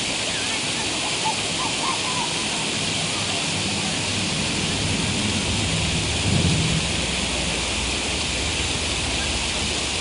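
Steady hiss of rushing water, a waterfall or rapids feeding a swimming hole, with a brief low rumble about six seconds in.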